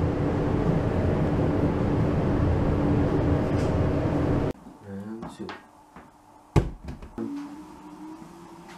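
A loud, steady hum with noise runs for about four and a half seconds, like a shop's ventilation or fan, and then cuts off. After a sharp knock, a treadmill motor starts up near the end with a whine that slowly rises in pitch as the belt speeds up.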